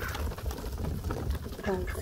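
Faint sounds of a flock of mallard ducks feeding close by on a wooden dock, over a steady low rumble; a voice begins near the end.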